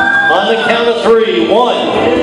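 Song playing: a singer's voice holding and gliding between notes over instrumental backing.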